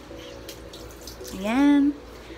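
A woman's short, loud rising vocal sound, like a hummed "hmm?", about a second and a half in, over a faint steady hiss.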